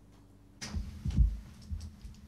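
A few dull, low thumps over a faint steady hum: the first just over half a second in, the loudest about a second in, and a smaller one near the end.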